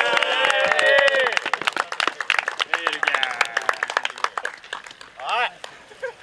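A group of men clapping and shouting together. The claps are sharp and many, and the voices are loudest in the first second or two.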